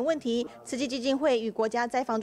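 Speech only: a news narrator's voice talking in Mandarin.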